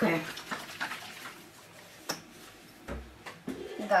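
Quiet handling of a plastic squeeze bottle of liquid cleaner and a metal baking tray with rubber-gloved hands, as the runny cleaner is squeezed out onto the tray. A sharp click comes about two seconds in and a soft thump near three seconds.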